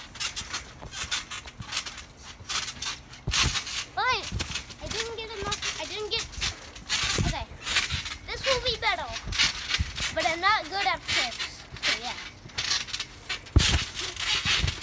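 Children bouncing on a trampoline: dull thuds of landings and knocks from a handheld phone being jostled, with short wordless shouts and calls from the kids. There is a loud thud near the end.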